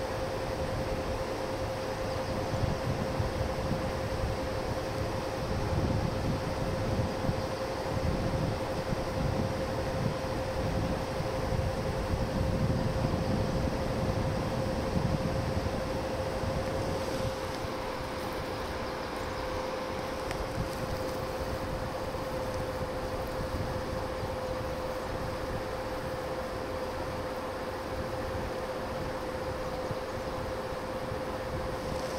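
Wind buffeting the microphone in gusts, a low rumble that comes and goes through the first half and settles down a little past halfway, over a steady hiss and a constant faint single-pitch hum.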